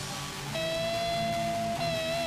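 Amplified electric guitar and bass noodling quietly between songs, with a long held high note coming in about half a second in.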